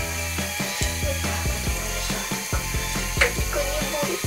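Hands scrubbing shampoo lather into a wet cat's fur and leg, a rapid scratchy, squelching rubbing, over background music with a steady bass.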